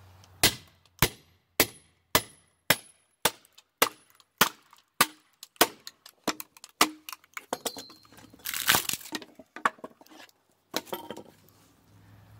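A small sledgehammer striking the head of a Fiskars hatchet wedged in a wooden block, a dozen or so sharp blows about two a second. About eight seconds in the wood cracks and splits apart with a longer crackling noise, followed by a few lighter knocks.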